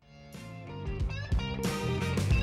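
Music: a song's guitar-led intro starting from silence and growing louder, with sliding guitar notes.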